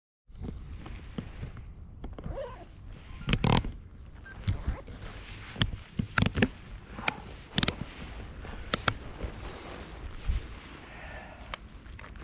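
Wind rumbling on the microphone, with irregular sharp knocks and rustles of fabric and gear moving close to it, the loudest about three and a half and six seconds in.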